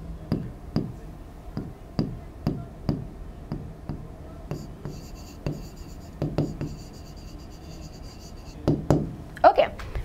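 Stylus tapping and scratching on a touchscreen whiteboard as a word is handwritten: a series of light, irregular taps, about two a second.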